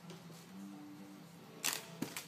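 A single sharp click near the end, the loudest sound, over faint steady low tones that start and stop.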